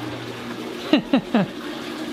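Balcony water fountain running steadily, with a short laugh about a second in.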